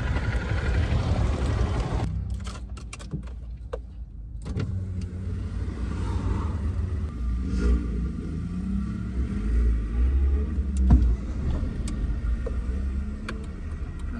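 Outdoor street noise for the first two seconds, then inside a car: a few clicks and knocks as the ignition key is worked, and the car's engine starting and running with a steady low rumble.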